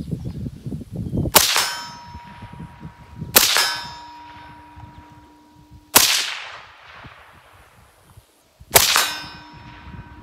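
Four suppressed rifle shots, two to three seconds apart, each answered by a steel target plate ringing on for a couple of seconds.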